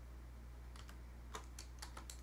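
Computer keyboard keystrokes: a handful of faint clicks, coming in quick pairs, as a short model name is typed into a terminal prompt.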